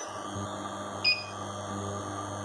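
Steady electrical hum from the pure sine wave inverter driving the induction plate at power level 8 (about 2128 W), growing stronger shortly after the start, with one short high electronic beep about a second in.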